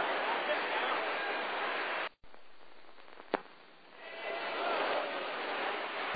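Steady arena crowd noise from a boxing audience. It cuts off abruptly about two seconds in, stays quieter with a single sharp click, then swells back up over the last two seconds.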